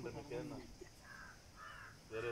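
A crow cawing: short calls, two of them close together in the second half.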